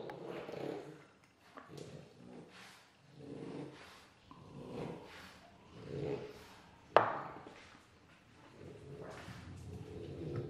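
French bulldog making a series of short sounds, about one every second or so, with one sharp click about seven seconds in.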